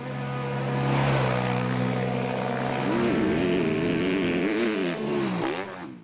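An engine-like drone that swells in over the first second and holds a steady pitch, then from about three seconds in wavers up and down in pitch until it ends.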